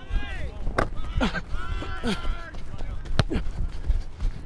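Distant shouted calls from players across an open football field, with a few sharp knocks and a low wind rumble on the microphone.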